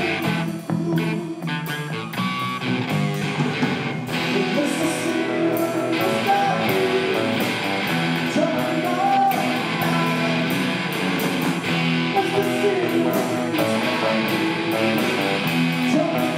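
A live rock band playing without vocals: electric guitars with some notes bent upward, over a drum kit with steady cymbal hits.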